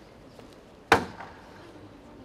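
A single sharp, loud percussive strike about a second in, dying away quickly; it is one of a slow series of strikes about three seconds apart.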